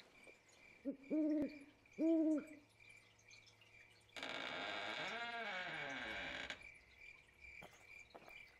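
An owl hooting twice, about a second apart, over crickets chirping steadily. Then a hissing sound with tones gliding down in pitch lasts about two and a half seconds.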